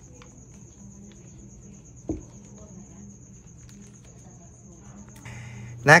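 Quiet handling of items in an open cardboard laptop box, with one soft thump about two seconds in as the power adapter is set down. A faint high-pitched pulsing trill, typical of a cricket, runs underneath and stops near the end.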